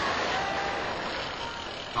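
Large football stadium crowd, a steady wash of cheering and shouting with a few faint held tones above it.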